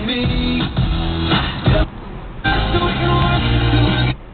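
Car radio playing a pop-rock song with strummed guitar, heard inside the car; the music drops away for about half a second near the middle.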